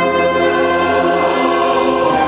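A mixed choir and wind band with brass and saxophones performing together, holding long sustained chords that shift about midway through.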